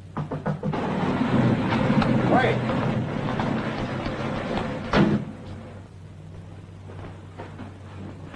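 A few knocks on a wooden door, then several seconds of busy street noise with traffic, broken by a loud thump about five seconds in; fainter knocking follows.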